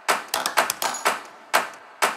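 A run of irregular sharp clicks, about eight in two seconds, each dying away quickly: a typewriter-style typing sound effect.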